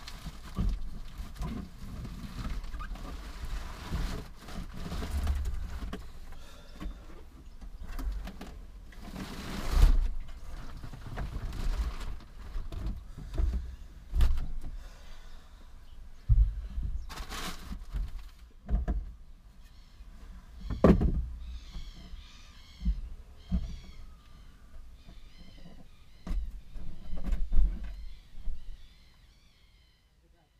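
A 1972 Honda CT90 motorcycle being manhandled into the back of a car, heard from inside the cabin: a long run of irregular thumps, knocks and scraping as it bumps against the car's body. From about two-thirds of the way in a bird chirps repeatedly in the background.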